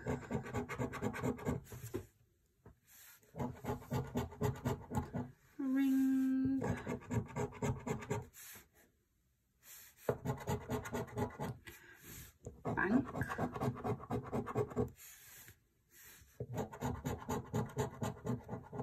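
A scratch card's coating being scratched off in quick, rasping strokes, coming in bursts of one to two seconds with short pauses between.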